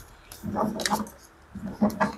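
A deck of tarot cards being shuffled by hand, with two sharp card snaps, about a second in and near the end, and a short low sound under each burst.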